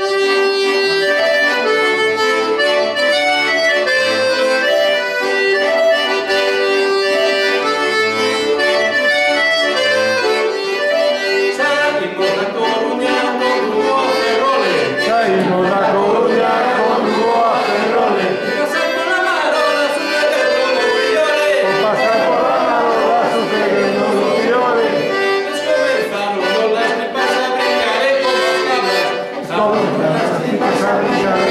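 Button accordion playing a folk tune with steady, stepping melody notes. From about twelve seconds in a man sings over it.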